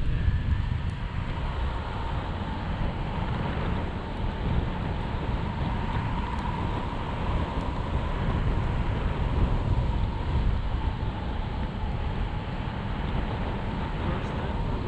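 Airflow buffeting the microphone of a pole-mounted camera during a tandem paraglider flight: a steady low rumble of wind noise. A faint, thin high tone runs through it and is a little stronger midway.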